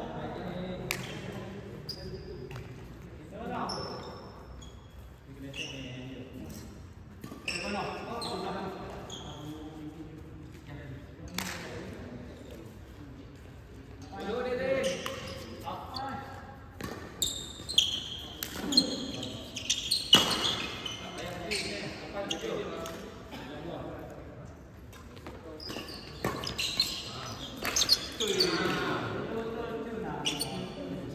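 Badminton doubles play in an echoing sports hall: sharp racket strikes on the shuttlecock and short squeaks of shoes on the court, thickest in the middle of the stretch and again near the end, with players' voices between.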